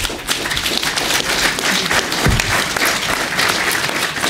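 Audience applauding: a dense crowd of hands clapping that starts abruptly and keeps going steadily.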